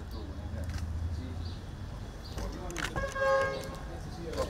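A single short, steady horn toot about three seconds in, the loudest sound, over a low rumble and faint voices.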